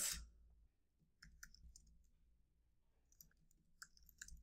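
Faint keystrokes on a computer keyboard: a few scattered clicks about a second in and again near the end, with near silence between.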